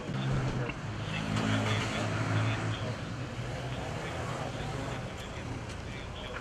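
A car driving past on the street, its engine hum loudest over the first few seconds and then easing off, with indistinct voices under it.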